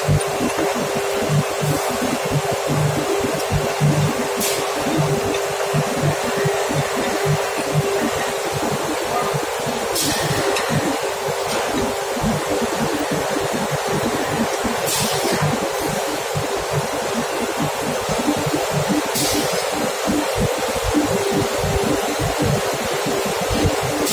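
Loud, steady drone of steel-plant machinery with a constant hum, and a short high hiss every few seconds.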